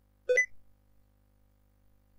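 Windows system alert sound: one short beep about a quarter second in, with a step up in pitch at its end. It is the signal that the Sticky Keys prompt has been triggered by pressing the Shift key five times.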